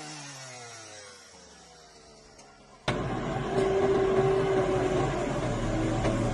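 A small motor winding down, its pitch falling as it fades. About three seconds in there is a sudden switch to a backhoe loader's diesel engine running loud and close, with a steady whine held through the middle.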